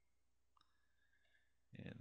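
Near silence: room tone, with one faint computer mouse click about half a second in.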